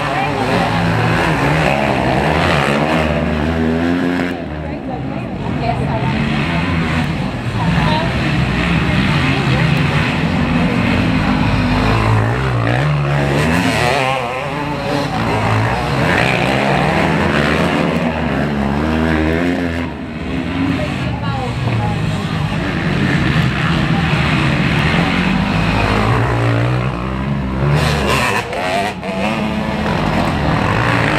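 Several dirt bike engines racing around a dirt track, revving up and falling off again and again as the bikes pass close by and pull away.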